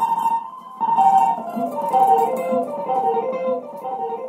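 Solo guitar playing a slow melodic line of single plucked notes that step down in pitch in short repeated runs, with a brief gap about half a second in.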